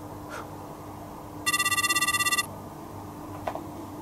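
Mobile phone ringing with a trilling, bell-like electronic ringtone: one ring of about a second, starting about a second and a half in.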